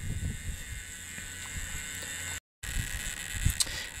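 Faint low rumble of background noise with a few soft knocks, broken by a brief gap of dead silence about two and a half seconds in.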